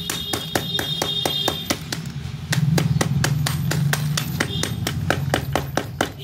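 Hammer rapidly pounding shards of a baked clay pot, about five strikes a second, crushing the soft clay to powder on a plastic sheet. A steady low hum runs underneath, louder in the middle.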